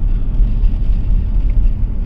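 Car driving along at steady speed, heard from inside the cabin: a constant low rumble of engine and road noise.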